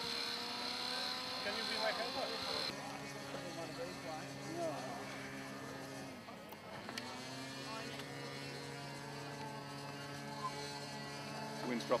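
Small model-aircraft glow engine running at a steady idle. Its note fades and dips about six seconds in, then settles again.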